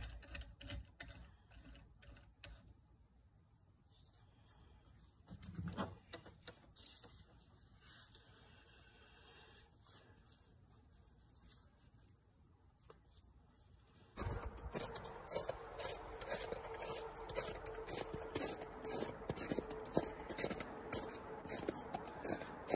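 Faint plastic clicks and ticks as the phone mount's tightening knob is turned, then low room tone. About fourteen seconds in, the background changes suddenly to a louder hiss with a faint steady hum.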